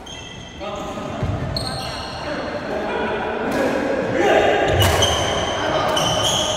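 Badminton rally on a wooden indoor court: rackets striking the shuttlecock with sharp hits, the strongest near the end, and shoes giving several high-pitched squeaks on the floor, in an echoing hall.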